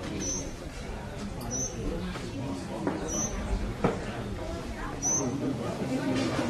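A small bird giving short, high chirps, four of them spaced about one and a half to two seconds apart, over a low murmur of voices.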